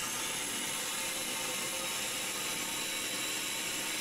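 Single-serve electric blender running with a steady whir, blending a cup of tortilla chips and soda.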